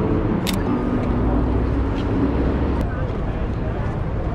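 Busy city street ambience: a steady traffic rumble and indistinct voices of passers-by, with a sharp click about half a second in.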